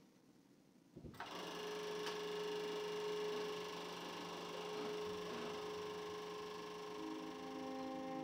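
Film projector running with a steady mechanical whirr and hum, starting about a second in. Near the end, held bowed-string notes of the song's intro come in.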